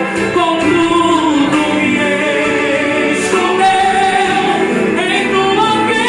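A woman singing a Portuguese-language gospel song into a microphone over instrumental accompaniment, holding long, sliding notes.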